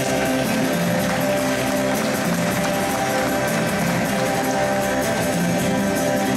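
Live instrumental acoustic guitar music: one player playing two acoustic guitars at once, a steady, unbroken flow of notes.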